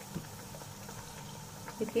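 Hot oil bubbling steadily around a pea-stuffed kachori deep-frying in a pan, the dough frying until it puffs up.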